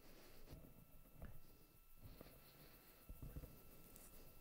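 Near silence: a faint steady electronic whine with a few faint low thumps and clicks, the slightly stronger one about three seconds in.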